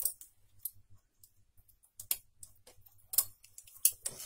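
Scattered small metal clicks from a domestic knitting machine's needles and hand transfer tools as stitches are lifted and swapped to cross a two-by-two cable.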